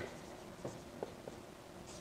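Marker writing on a whiteboard: a few faint short squeaks and taps as the strokes are drawn.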